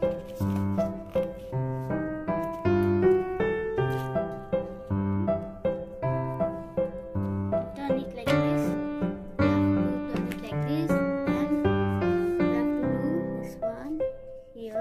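Background music: a light tune of short keyboard-like notes over a steady bouncing beat, with low notes about twice a second.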